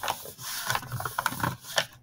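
Paper plate crackling and rubbing as hands press and smooth it flat against a table, a rapid run of small clicks and creaks.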